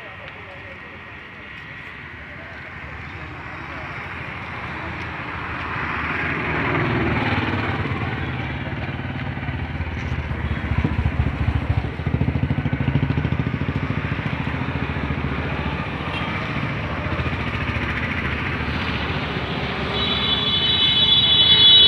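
Motor vehicle engine and road traffic noise, a low rumble that builds up over the first few seconds and then stays steady and loud.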